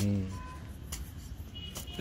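A digging tool striking dry earth twice, about a second apart, over a steady low hum, with a brief vocal sound at the start.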